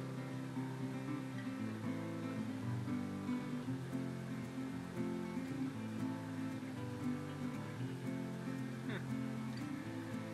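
Background acoustic guitar music, strummed chords changing every second or so.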